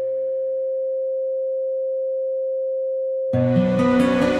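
A steady pure sine tone a little above 500 Hz, held at one pitch throughout. Soft music fades away under it at the start, and fuller music cuts in suddenly a little past three seconds in, louder, with the tone still sounding underneath.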